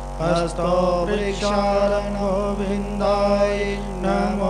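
A mantra chanted in a melodic, sung voice over a steady held drone. The voice comes in just after the start, following a brief dip.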